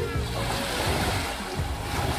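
Small sea waves breaking and washing up on a sandy shore, with soft background music underneath.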